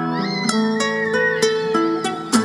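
Two acoustic guitars playing an instrumental duet: plucked notes over held lower notes, while a high note slides up and is held with a wavering vibrato.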